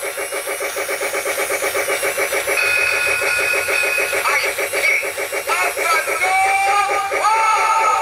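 Lionel Polar Express battery-powered toy steam locomotive playing its sound effects through a small built-in speaker: a rapid, even steam chuffing throughout, with a multi-note whistle joining about two and a half seconds in and further whistle tones near the end.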